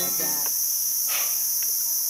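Steady, high-pitched insect chorus droning without a break.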